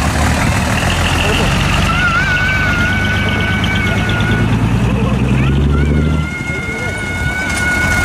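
Large diesel truck engine running as decorated trucks pull out past, its low steady drone dropping away about six seconds in. A high, steady tone sounds twice over it, each time for about two seconds.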